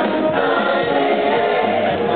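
Musical theatre cast singing a gospel-style ensemble number together as a choir.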